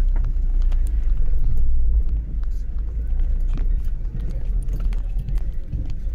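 Street noise dominated by a low rumble from a car close by, loudest for the first two seconds and easing after that, with scattered clicks and background voices.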